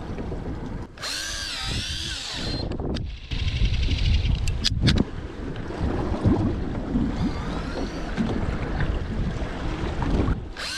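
Daiwa Tanacom 1000 electric fishing reel's motor winding line in a short burst about a second in, its whine wavering up and down in pitch, then faintly again later. Wind rumbles on the microphone, heaviest in the middle.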